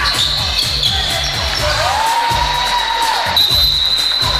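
Basketball bouncing on a hardwood gym floor during play, with high squeaks from players' shoes on the court.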